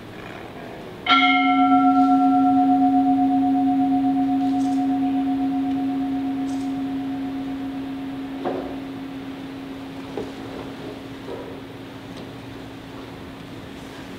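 Altar bell struck once at the elevation of the chalice after the consecration, its one low tone with a few higher overtones ringing on and slowly fading over about twelve seconds.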